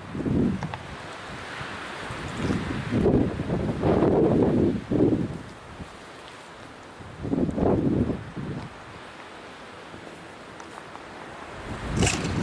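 Wind buffeting a moving microphone, with rustling as it pushes through scrub. The rumbling comes in irregular gusts: a short one at the start, a long one from about two and a half to five seconds in, and another around eight seconds.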